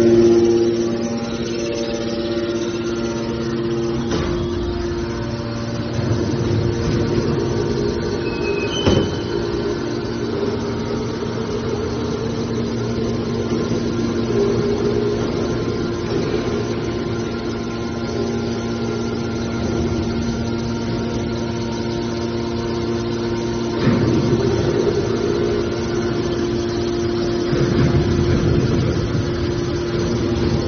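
Hydraulic scrap-metal baler running, its motor and pump giving a steady hum. A single sharp knock comes about nine seconds in, and the machine gets louder and rougher twice near the end as the rams work.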